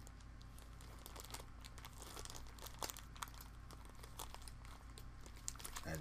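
Faint crinkling and scattered light clicks of plastic packaging and a small 12 mm proximity sensor probe being handled, over a low steady hum.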